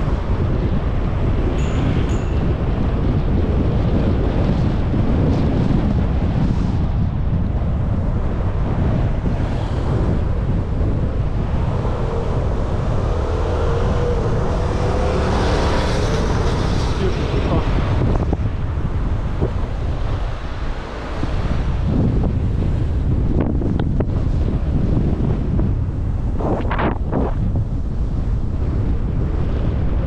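Wind buffeting a bike-mounted camera's microphone while riding in traffic, a steady rumble throughout. About halfway through, a louder stretch with a droning engine tone as the bike passes double-decker buses.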